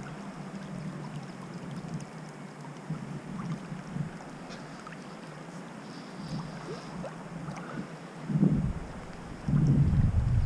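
Steady sound of river water flowing around the wading angler, with faint small splashes and ticks. Gusts of wind rumble on the microphone, once briefly about eight and a half seconds in and again from just before the end.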